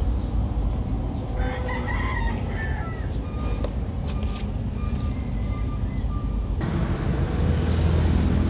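A rooster crowing faintly once, about a second and a half in, over a steady low rumble.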